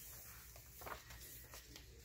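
Faint rustle of a thick paper page in a handmade journal being turned by hand, with a couple of soft paper ticks.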